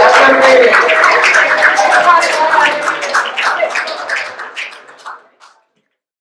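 Audience applauding with scattered cheering voices after a song, fading out near the end.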